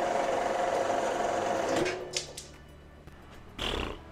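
Horizontal metal-cutting band saw running steadily as it cuts the excess off a machined aluminium part, then stopping about two seconds in. A short thump near the end.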